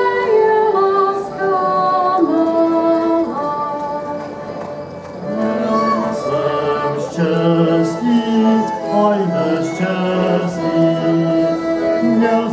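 A folk ensemble singing a song in several voices, women's voices to the fore, with the folk band playing along. The sound dips briefly about five seconds in, then a new phrase begins on lower notes.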